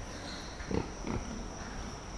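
Pigs grunting softly twice in a pen, over a steady high-pitched insect drone.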